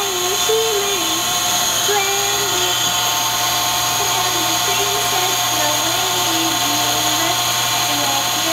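A woman humming softly in a slow tune of held notes that step up and down, over a steady electrical whine and hum.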